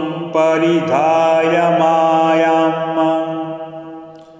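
A man chanting a Sanskrit Vedic mantra, drawing a syllable out into one long held note that fades away near the end.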